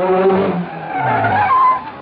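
A car arriving fast and braking, its tyres squealing over the engine noise, then stopping abruptly just before the end.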